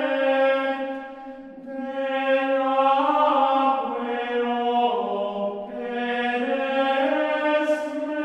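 Gregorian chant: voices singing a single melodic line in unison, holding each note and moving up and down in steps, with a brief softer moment between phrases about a second in.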